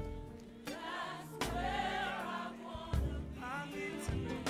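Gospel choir singing a drawn-out phrase with band accompaniment: held chords under the voices and a few sharp drum hits.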